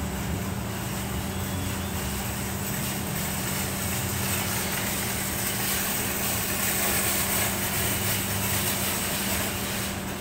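Steady mechanical hum, one droning tone over an even rushing noise, holding level throughout.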